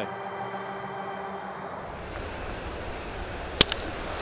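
Steady ballpark background noise with a low hum that changes about halfway through. Near the end comes one sharp crack of a bat hitting a pitched baseball.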